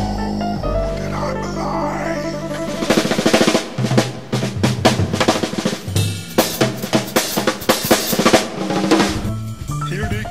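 Instrumental jazz break: held bass and chord notes, then from about three seconds in a busy drum-kit passage of rapid snare hits and cymbals over the bass.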